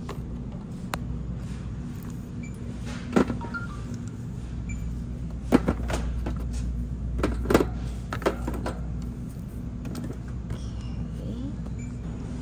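Groceries knocking and clattering in a wire shopping cart: a few sharp knocks, mostly bunched in the middle, over a steady low hum of store background.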